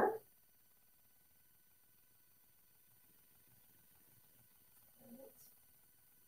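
Near silence, broken once about five seconds in by a brief, faint, low pitched sound.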